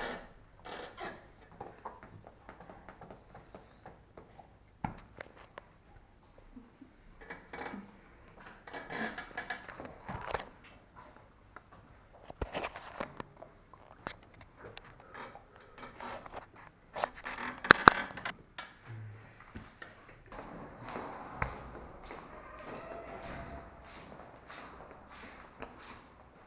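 Scattered rustles, small knocks and clicks of a handheld camera being moved around and of clothing, with a quick cluster of sharp clicks about two-thirds of the way through.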